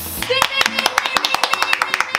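Two people clapping their hands quickly and evenly, starting about a third of a second in, with laughter over the claps.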